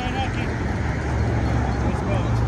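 Outdoor city ambience: a steady low rumble of road traffic, with brief distant voices of people near the start.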